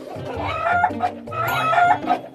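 Chickens clucking and a rooster crowing, over background music.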